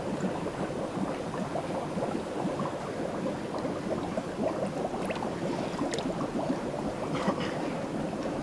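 Steady running and bubbling water from the holding tanks and vats, with a few faint light clicks.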